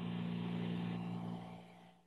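A steady, even-pitched droning hum with overtones, holding for about a second and a half and then fading away.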